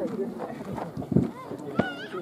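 Several men's voices talking at once in the background, with a sharp knock near the end.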